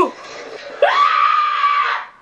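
A high-pitched scream that starts almost a second in, rises quickly in pitch and is then held for about a second before breaking off.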